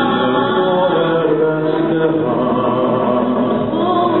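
A woman and a man singing a duet through microphones, holding long notes.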